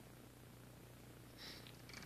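Near silence: room tone with a faint steady low hum, and a brief faint rustle about one and a half seconds in.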